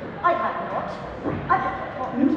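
A person's high-pitched whimpering cries, twice, without words.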